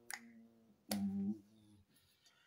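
Two sharp clicks about a second apart, the second followed by a short, steady voice sound from a man.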